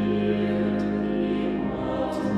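Mixed chamber choir singing sustained chords, moving to a new chord near the end.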